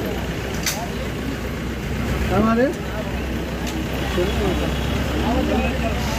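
A police jeep's engine idling with a steady low rumble, heard from inside the vehicle, under the voices of people talking around it.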